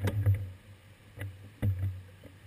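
A few knocks with low thuds picked up through the seat-post-mounted camera of a stopped bicycle: a cluster at the start, another just past a second, and a double knock near the end.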